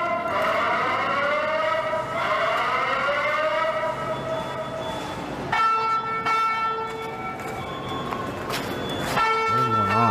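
Alarm or siren tones in the footage's own sound: several wailing pitches glide slowly up and down, then give way about five and a half seconds in to steady, shrill tones that break off and start again near the end.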